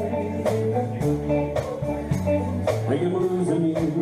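Live country band of electric and acoustic guitars, bass and drums playing a slow song, with a drum hit about once a second.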